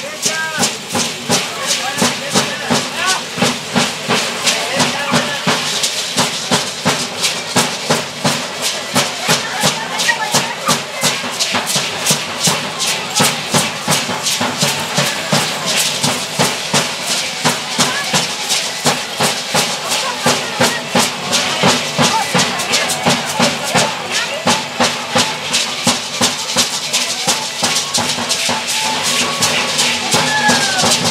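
Many matachines dancers' hand rattles shaken together in a steady dance rhythm, about two to three strokes a second, over the chatter of a crowd.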